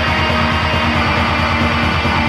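Black metal: heavily distorted electric guitars over fast, steady drumming with a rapid even pulse.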